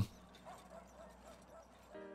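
Faint barking and yipping of small dogs: short, quick calls repeating close together.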